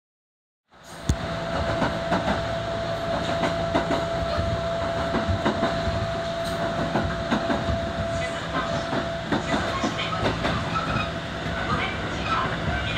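Kintetsu commuter train running, heard from inside the carriage: a steady rumble with the wheels clicking over rail joints. A steady hum runs along with it and stops about nine seconds in. The sound comes in suddenly, just under a second in.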